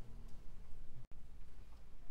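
A quiet pause in an orchestral recording: the last of a soft, low sustained chord fades into faint hall ambience, with a momentary dropout about a second in.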